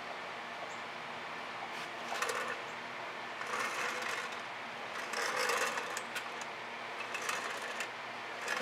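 A wooden board carrying a wet-painted canvas scraping and sliding on a tabletop as it is turned by hand, in about four short scrapes.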